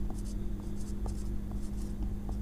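Whiteboard marker writing on a whiteboard: a run of short scratchy strokes as a word is written by hand, over a steady low hum.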